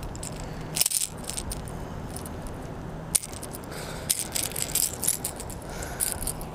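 Metal treble hooks and split rings of a popper lure rattling and clicking in short bursts as a hooked smallmouth bass, held up by the lure, shakes and thrashes; the bursts come about a second in and again around four to five seconds.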